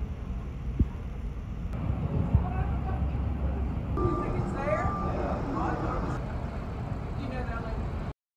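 A steady low rumble with people talking indistinctly, the voices clearer from about halfway through.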